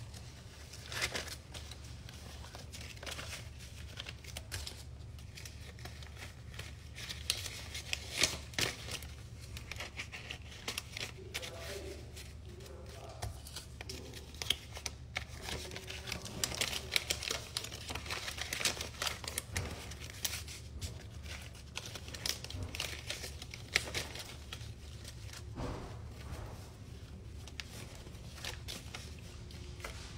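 Paper banknotes being counted by hand: an irregular, continuous run of crisp flicks and crinkles as bills are thumbed off a thick stack.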